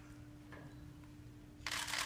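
A faint steady hum, then near the end one brief, sharp rustle.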